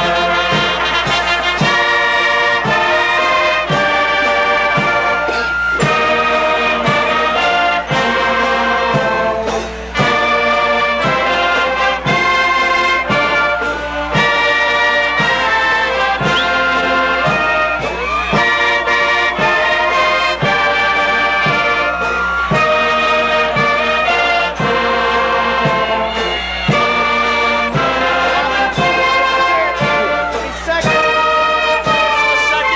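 Brass-led band music for the processional, with held notes over a steady march beat.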